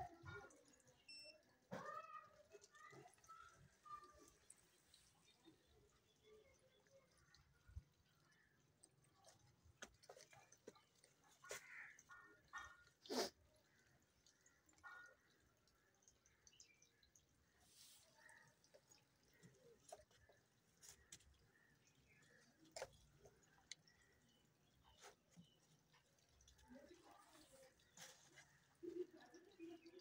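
Near silence, broken by faint scattered clicks and handling sounds as bare optical fiber is worked at a fusion splicer. The loudest is a single sharp click about halfway through.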